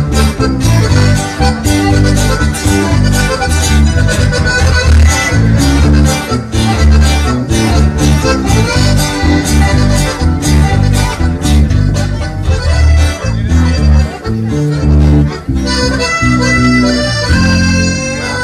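Live norteño band playing an instrumental passage: button accordion leading over guitar and a heavy bass line with a steady beat. About three seconds before the end the beat stops and held accordion notes ring out.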